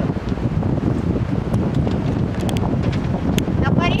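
Wind rumbling on the microphone, a steady low noise, with a few faint sharp clicks.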